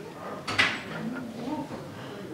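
A single short, sharp noise about half a second in, over faint voices in a hall.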